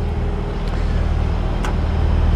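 A steady low drone like a vehicle engine idling, with no change in pitch.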